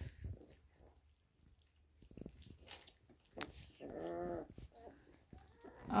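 Three-week-old chocolate Labrador puppies eating together from a food bowl: faint clicks of mouths at the food, and about three and a half seconds in, one puppy gives a single cry lasting about a second.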